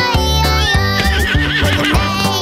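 A cartoon horse whinny with a pitch that wavers up and down, starting about halfway in, over bouncy children's-song backing music with a steady bass beat.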